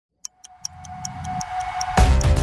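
Ticking-clock sound effect, about five even ticks a second, over a steady tone and a low swell that grow louder. It is the build-up that opens a news podcast's intro jingle.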